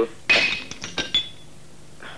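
A piece of tableware is dropped and breaks, with a sharp crash about a quarter second in, then a few ringing clinks as the pieces settle.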